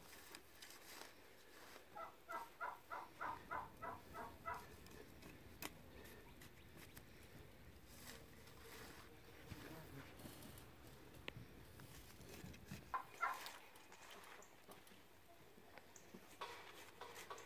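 Mostly quiet. About two seconds in, a bird calls a quick run of about ten evenly spaced notes, roughly four a second, lasting about two and a half seconds.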